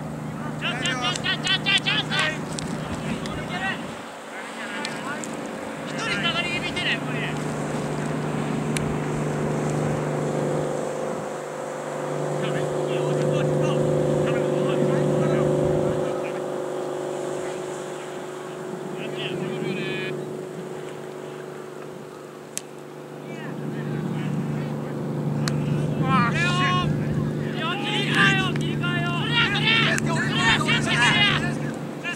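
An engine drones steadily, swelling louder for a few seconds in the middle. Over it come bursts of distant shouting and calling from players on the field.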